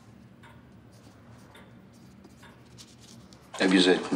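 Quiet room tone with a few faint scratches, then a short spoken phrase near the end.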